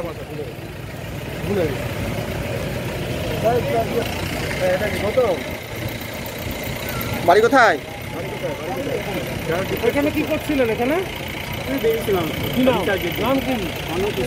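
A vehicle engine idling under scattered voices talking at a roadside, with one louder voice about halfway through.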